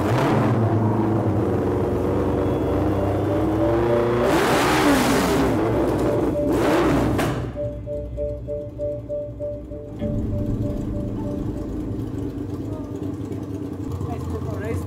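Yamaha XJR1300 custom café racer's air-cooled inline-four engine being revved through its custom exhaust: the note climbs over the first few seconds, surges sharply twice, about four and a half and seven seconds in, then settles to a steadier run.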